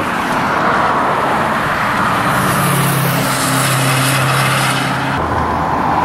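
Road traffic going by close at hand: steady tyre noise, with one vehicle's engine hum and louder tyre hiss from about two seconds in, cutting off about five seconds in as it passes.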